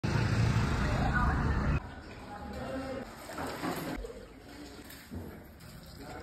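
A loud rushing rumble of street noise that cuts off suddenly about two seconds in. After it, quieter voices talk in the background.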